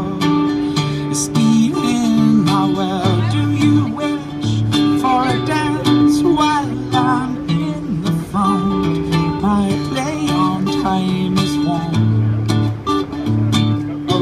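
Acoustic guitar strummed steadily, with a man's singing voice coming in at intervals in long, wavering notes.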